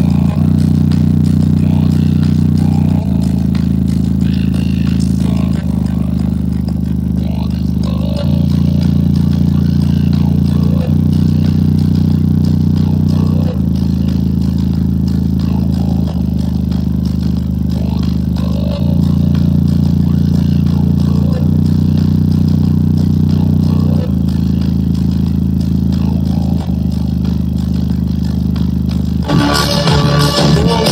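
JBL Charge 4 portable Bluetooth speaker playing a deep bass test track loud, in low-frequency mode: long held low bass notes that change about every two and a half seconds. Near the end, fuller music with higher sounds comes in.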